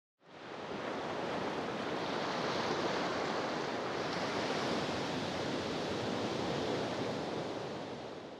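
Ocean surf washing steadily, fading in just after the start and beginning to fade out near the end.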